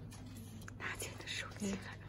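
Soft whispered speech from a woman: a few breathy syllables about a second in and a short voiced sound near the end, over a steady low electrical hum.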